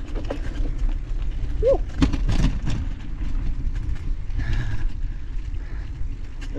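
Bicycle ride over a dirt forest trail: a steady low rumble of wind and tyres, with clicks and rattles as the bike goes over bumps and one brief squeak under two seconds in.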